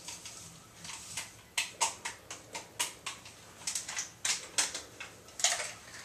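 Crinkling and crackling of a plastic drink-mix packet as its powder is shaken out over a glass: a string of short, irregular crackles.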